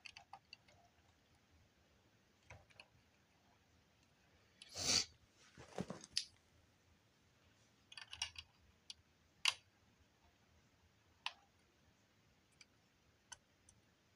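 Faint, scattered clicks and taps of plastic building-brick pieces as translucent rods are handled and fitted onto a plastic dish assembly. A short, louder handling noise comes about five seconds in, and a sharp click about nine and a half seconds in.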